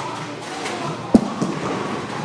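Bowling alley din with faint background music, and one sharp knock about a second in.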